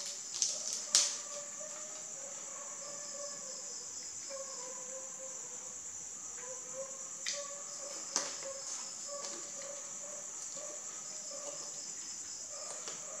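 A few sharp crunches of crispy fried chicken wing being torn apart and bitten, the loudest about a second in and another about eight seconds in. Steady, high chirring of crickets or other insects runs underneath.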